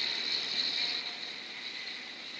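City street traffic noise from passing vehicles, a steady hiss-like rush that drops lower about a second in.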